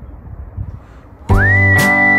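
Faint background noise, then about a second in background music starts abruptly: a whistled melody that slides up into a held note over strummed acoustic guitar.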